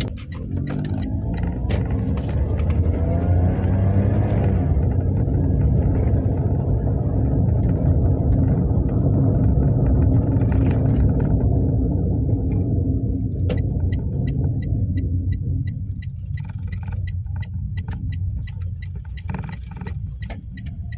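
A small car's engine and road noise heard from inside the cabin while driving, the engine note climbing in pitch about two to four seconds in as it accelerates, then holding steady. In the last few seconds the rumble eases and a regular light ticking sounds.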